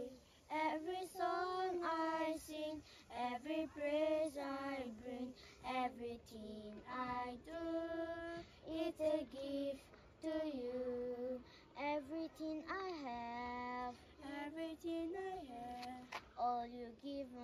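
Young girls singing a Christian worship song, a single melodic line in phrases a second or two long with short breaths between them.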